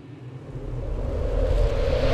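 A deep rumbling whoosh that swells steadily louder: a riser-style transition sound effect building towards the next section of a trailer.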